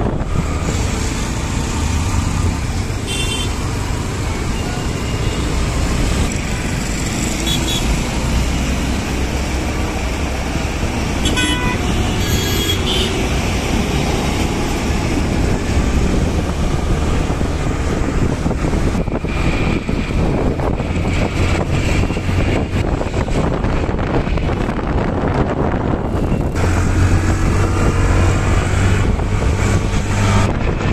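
City road traffic heard from inside a moving vehicle: a steady engine rumble and tyre and road noise, with a few short horn toots in the first half.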